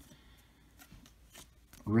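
Faint handling of a stack of baseball cards: a few soft clicks and a light rustle as a card is slid from the front to the back of the stack. A man's voice starts near the end.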